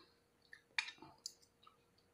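A few soft, short clicks and scrapes of a metal spoon and fork working food on a plate while a taco is filled.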